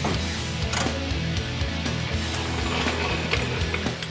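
Ratchet wrench clicking in quick runs as the lower rear shock bolt is run in and tightened, over steady background music.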